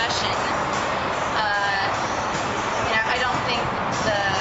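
Brief indistinct voice fragments over a steady background noise like road traffic.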